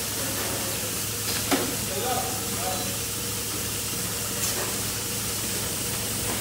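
Milking-parlour equipment running during milking: a steady hiss of vacuum and milk flow through the milk meter over a constant low machine hum, with a couple of sharp clicks.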